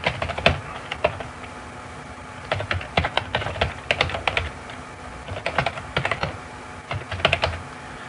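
Typing on a computer keyboard: quick runs of keystroke clicks in four or so bursts, with short pauses between them.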